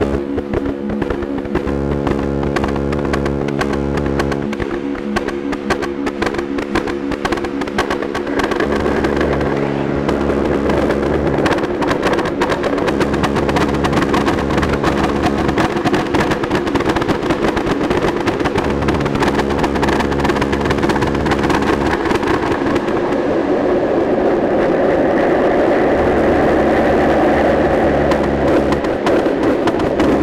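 Modular synthesizer playing an electronic piece: a deep bass that switches on and off every second or two, held tones that fade out over the first ten seconds, and a dense, fast clicking texture throughout. A louder mid-range swell builds over the last several seconds.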